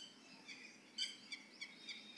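Faint, short, high chirps of small birds, about six scattered unevenly over two seconds.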